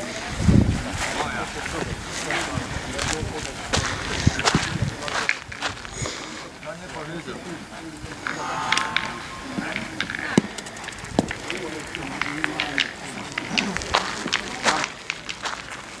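Steel pétanque boules clacking against each other and thudding onto gravel, scattered sharp knocks, over the indistinct chatter of many players.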